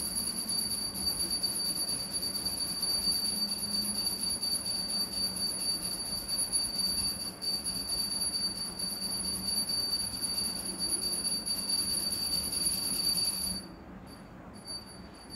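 A steady, high-pitched ringing tone, several pitches held together over a background hiss and a low hum, cutting off suddenly near the end.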